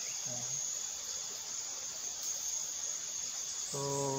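Steady, high-pitched chorus of insects chirring without a break.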